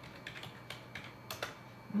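Computer keyboard being typed on: a few irregular keystroke clicks, which stop about one and a half seconds in.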